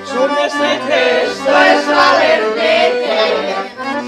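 Piano accordion playing a lively bećarac folk tune, with voices singing along.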